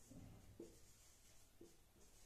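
Faint, intermittent strokes of a marker pen writing on a whiteboard.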